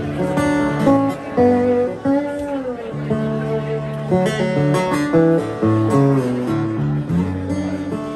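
Live instrumental passage led by a cigar box guitar played flat on the lap, a melody of plucked notes that glide between pitches, over an electric bass line.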